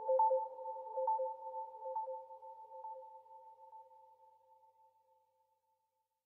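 Closing fade of an electronic track: a two-tone synthesizer note restruck about once a second, dying away to silence about five seconds in.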